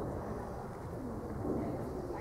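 A pigeon cooing, heard over a steady low outdoor rumble.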